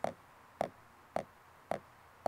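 Left-hand buzz strokes played with a drumstick on a drum practice pad, the thumb pressing the stick down into the pad so each stroke makes a short buzz. Four strokes, evenly spaced about half a second apart.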